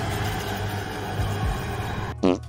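A dense, steady rumbling drone with low sustained bass tones underneath: the horror film's soundtrack swelling under its title card.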